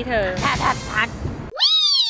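A woman speaking, then about three quarters of the way through a single cat meow: one long call that rises and then falls in pitch.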